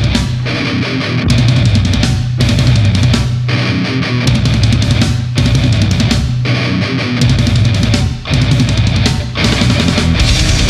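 Deathcore song played on distorted electric guitars, bass and drum kit, in a heavy riff that stops short and hits again about once a second.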